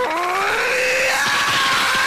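A cartoon character's long, drawn-out scream, rising in pitch over the first second and then holding, with music underneath.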